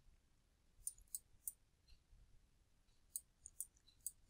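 Faint computer mouse clicks while a document page is scrolled: a few short sharp clicks around a second in and a few more past three seconds.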